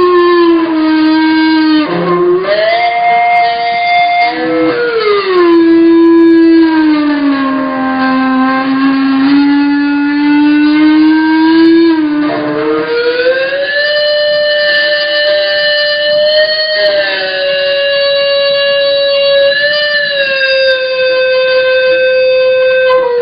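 Electric seven-string guitar in endless sustain from speaker feedback: a small speaker driven by the distorted amp, held over the strings, keeps one distorted note ringing with no picked attacks. The note glides slowly down and up in pitch, jumping higher about 2 seconds in and again about 12 seconds in.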